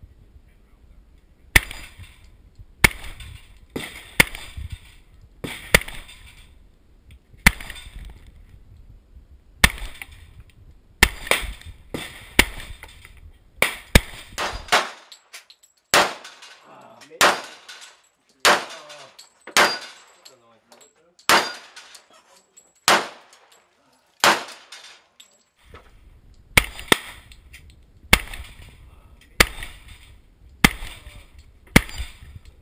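Hi-Point .45 ACP semi-automatic pistol fired shot after shot, about twenty rounds at a steady pace of roughly one every second or so with a few quicker pairs. Each shot cracks sharply and trails off in a short echo.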